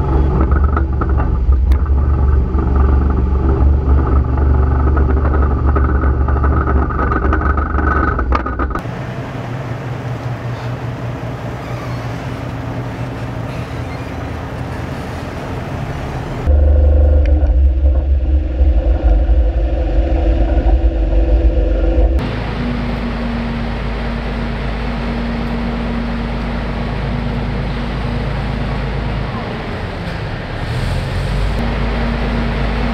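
Heavy vehicle engines running as tanks are towed and moved, heard in several cut-together clips. A loud, deep engine runs for about the first nine seconds and again from about sixteen to twenty-two seconds, with steadier, quieter machine noise in between and after.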